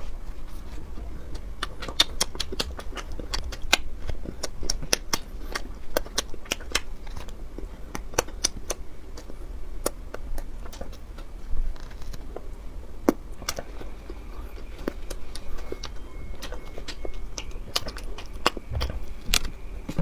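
Close-miked chewing of a fried dough twist: an irregular run of crisp crunches and wet mouth clicks, a few of them sharper and louder than the rest.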